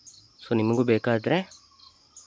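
A person speaks a short phrase about half a second in, over a faint, steady, high-pitched insect chirring with a few light bird chirps.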